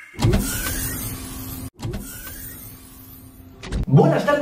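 Mechanical motor-whir sound effect in two runs, each a low hum with a faint whine rising and falling. The first run cuts off sharply under halfway through; the second fades away. A low thump comes just before the end.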